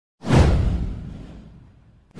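Intro sound effect: a whoosh with a deep boom under it, starting suddenly just after the start and sweeping down in pitch as it fades over about a second and a half.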